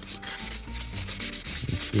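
Sandpaper rubbed back and forth in quick short strokes, about six a second, lightly scuffing the windshield's mirror-mount area.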